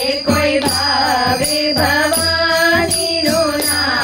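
Women singing a Gujarati Navratri devotional song together, with a dholak drum keeping a steady beat underneath.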